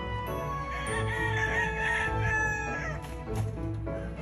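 A gamefowl rooster crowing once: a wavering call of about two seconds, starting just under a second in. It is heard over background music with a steady beat.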